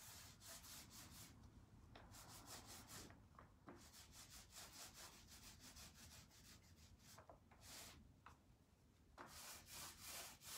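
Very faint, quick strokes of chalk mineral paint being applied to a wooden tabletop, several strokes a second in runs with short pauses.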